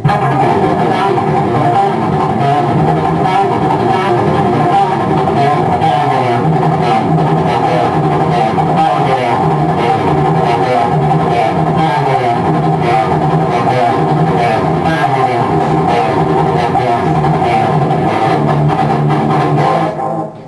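PRS electric guitar played through an amplifier: one continuous, unbroken passage of notes that cuts off abruptly at the very end.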